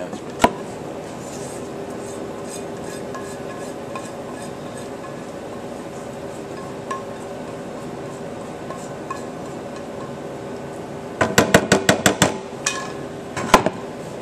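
Batter scraped out of a metal frying pan into a stainless steel baking pan with a utensil: faint scraping, one sharp metal knock about half a second in, and a quick run of about ten sharp knocks on the pans near the end. A steady hum runs underneath.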